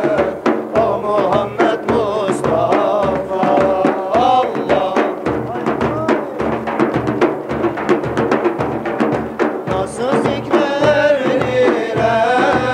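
A group of men singing a devotional hymn together over a steady beat of several large hand-held frame drums (daf).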